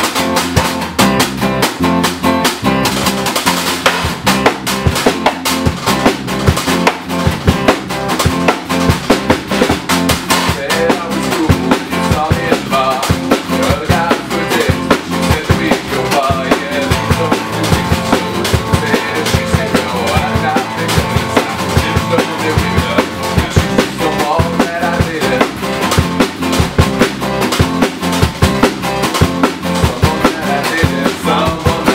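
A small rock band playing a song live: a drum kit keeps a steady beat with kick, snare and rimshots, under a strummed acoustic guitar and a bass guitar.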